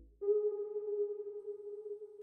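A single steady synthesizer tone, fairly low and pure with faint overtones, coming in a moment after the beat drops out and held quietly for nearly two seconds.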